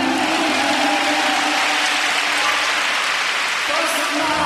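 Arena audience applauding, the clapping starting suddenly and thinning near the end, with the skating music continuing faintly underneath.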